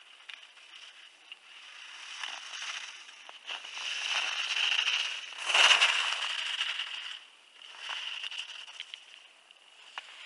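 Ski edges carving and scraping on hard-packed snow as a giant slalom racer turns through the gates, a hiss that grows louder to its peak as the skier passes close about six seconds in, then fades, with one more short swell on the next turn.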